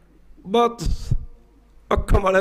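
A man's voice speaking a short phrase into a microphone, followed by a few low thumps just before a second in. Then a brief pause, and speech starts again near the end.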